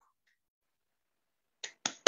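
Near silence, then two sharp hand claps about a fifth of a second apart near the end, coming through a video-call connection.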